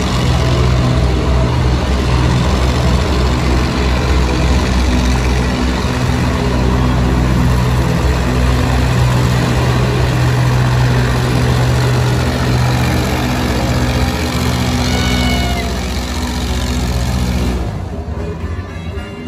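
Airboat engine and fan propeller running loud and steady as the boat speeds across the water. The engine sound drops away near the end.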